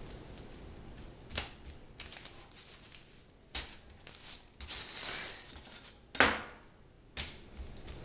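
Handling noise as a raw whole fish is moved and laid out on a plastic cutting board: a handful of short, irregular knocks and brief rustles.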